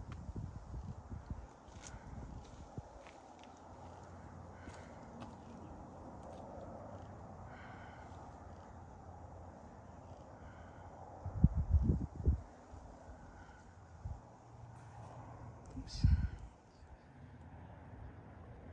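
Outdoor ambience on an exposed cliff ledge: a steady faint hush broken by short low rumbles of wind buffeting the microphone, once at the start, most strongly about two-thirds of the way in, and again near the end.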